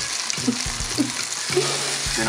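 Tomato halves and button mushrooms frying in margarine in a non-stick pan: a steady sizzle, with a few light clicks as a fork turns them in the pan.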